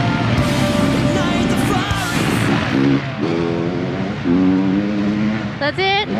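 Heavy rock music with electric guitar, settling into held notes in the second half.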